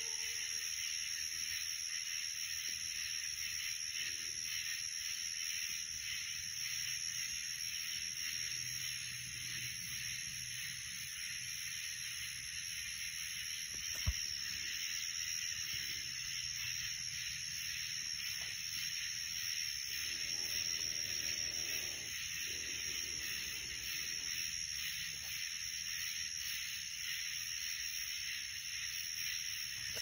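Steady high-pitched chorus of night insects, a constant shrill drone, with a single sharp click about halfway through.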